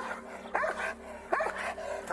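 A dog barking twice, two short barks under a second apart.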